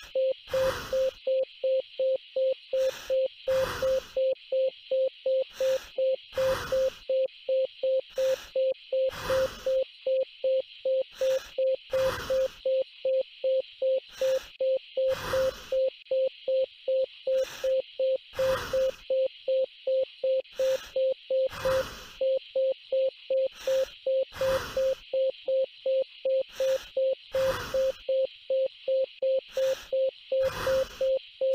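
A patient heart monitor beeps once per beat, a single steady tone about three times a second, which matches the displayed heart rate of 180: a rapid tachycardia. Short rushes of noise come in between, about one every one to two seconds.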